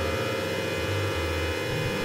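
Experimental electronic music: a dense, steady drone of many sustained tones, over low bass notes that shift every half second or so.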